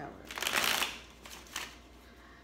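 Tarot cards being shuffled by hand: a rustling burst of about half a second, then a shorter one.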